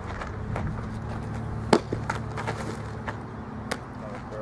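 A softball smacking into a catcher's mitt with one sharp pop a little under two seconds in, followed by a few lighter clicks, over a steady low rumble.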